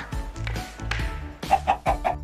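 A chicken clucking, three or four quick clucks near the end, over light background music.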